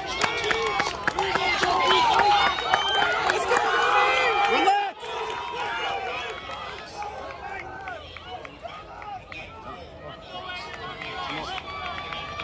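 Crowd of track-meet spectators shouting and cheering a relay race, many voices overlapping. The cheering is loud at first, cuts off suddenly about five seconds in, and quieter crowd chatter follows.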